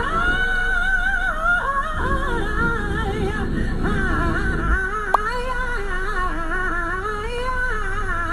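Live gospel music: a woman singing long, wavering, ornamented runs into a microphone over a band accompaniment.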